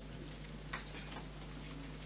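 A few soft clicks and paper rustles from papers and the laptop being handled at a lectern, over a steady low electrical hum.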